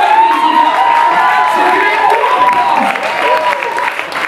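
A woman's voice wailing one long, high held note into a microphone, gliding up at the start and fading near the end: a comic imitation of a mother weeping. Audience applause and crowd noise run underneath.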